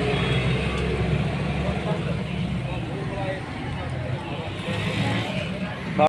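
Roadside street noise: an engine running steadily, with people's voices in the background.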